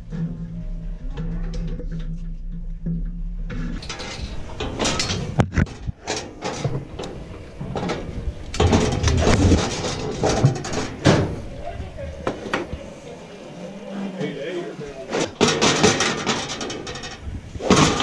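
Rubbing, knocks and clatter of a camera being handled and repositioned on a metal cattle chute, with indistinct voices. A steady low hum fills the first few seconds before the handling starts.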